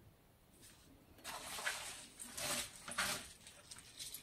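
Hands mixing and pressing shredded raw cabbage in a plastic bucket: crisp rustling in a few short bursts, starting about a second in.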